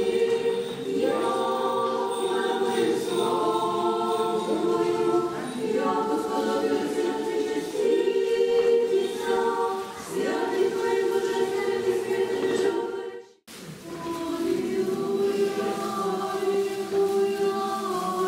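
Orthodox church choir singing unaccompanied, slow sustained chant-like lines in several voices. About thirteen seconds in the sound briefly drops out, then the singing resumes.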